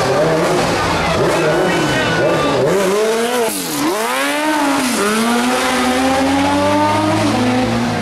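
A car engine revving. Its pitch drops sharply and climbs back up about halfway through, then rises slowly and steadily.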